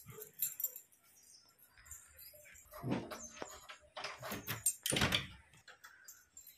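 A bunch of house keys jangling in hand, then several louder clunks a few seconds in as the front door's lock and door are worked.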